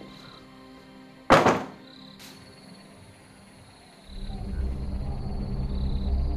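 A door being shut with one loud thud, followed a second later by a short click, then low, dark background music swells in.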